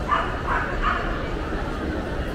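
A small dog yapping three quick times in the first second, over the steady murmur of a crowd of shoppers.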